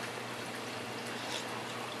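Water running and splashing steadily into a reef aquarium sump, with a steady low hum underneath.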